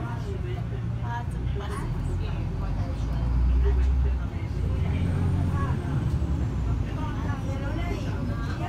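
City bus engine rumbling, heard from inside the passenger cabin as the bus moves slowly through traffic, growing louder for a moment about three to four seconds in.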